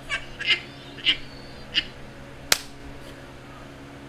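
A man laughing in four short, high-pitched, wheezing bursts, then a single sharp click about two and a half seconds in.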